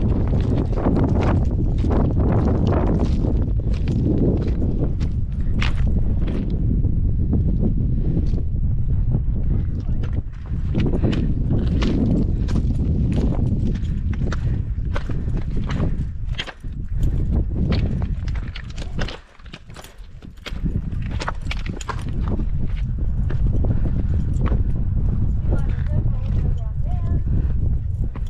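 Hiking boots stepping on a rocky, stony path in a steady run of sharp clacks and crunches, with wind buffeting the microphone. The wind drops away briefly about three-quarters of the way through.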